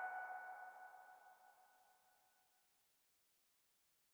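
The last ringing note of an electronic background music track fading out over about the first second, then silence.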